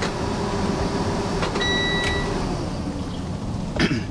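School bus running steadily, heard from inside the cab as an even rumble with a low hum. A single short electronic beep sounds about one and a half seconds in.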